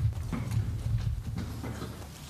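Irregular low knocks and thuds picked up by the lectern microphone, with a few light clicks, fading near the end: handling noise on stage during the changeover between talks.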